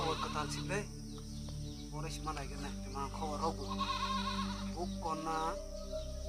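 Background music with a steady low drone. Several short, wavering, voice-like calls sound over it.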